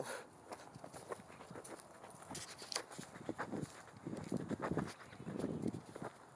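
Footsteps through tall dry grass, the stalks rustling and brushing against the legs at an uneven walking pace, louder in the second half.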